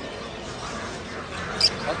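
Steady low background noise with one short, high-pitched chirp from a caged lovebird about a second and a half in.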